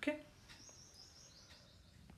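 Quiet room tone with a faint, high-pitched drawn-out sound from about half a second in, fading away near the end.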